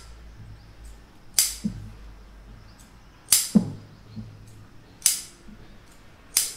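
Tailor's scissors snipping through blouse fabric while cutting out a chalk-marked piece: separate sharp snips, five in all, spaced one to two seconds apart.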